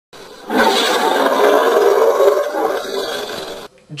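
Intro sound effect: a loud, sustained roaring noise that starts about half a second in and cuts off abruptly just before the end.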